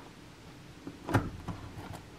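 Knife pressing down through buttered layers of phyllo dough in a glass baking dish: a few soft clicks and taps, the loudest a little past the middle, otherwise quiet.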